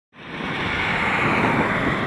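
Road noise of a car driving past on the street, a steady rushing of tyres on asphalt that builds up over the first half second.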